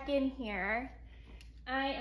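A woman's voice speaking, with a short pause about a second in.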